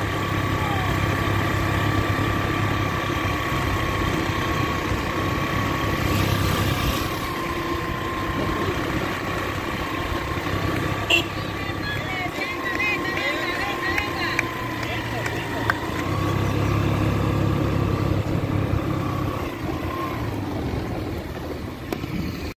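A motor vehicle's engine running steadily, a low rumble with a steady whine over it, and voices faintly in the background.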